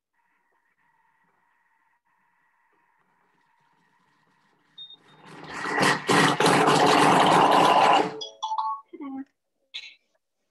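Thermomix blades chopping quartered apple and sage leaves at speed 5: the motor winds up about five seconds in, runs loudly for about three seconds and stops suddenly. A few light clicks and knocks follow.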